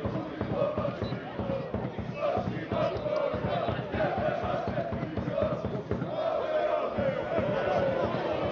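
Football stadium crowd chanting and shouting during play, several voices holding long wavering chant notes over general crowd noise.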